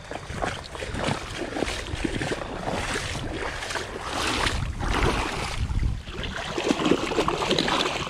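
Shallow water sloshing and splashing around wading boots and a bluefish held in the water by a lip gripper, in uneven surges. Wind rumbles on the microphone underneath.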